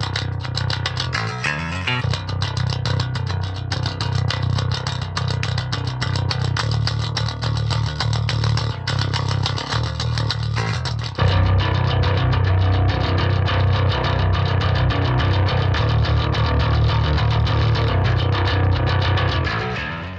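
Electric bass playing a metal riff from a clean DI through EZmix 3 amp chains. It starts on a clean tone with bright, clanky note attacks, and about eleven seconds in it turns louder and denser, to a driven tone with grit and mid-range fullness.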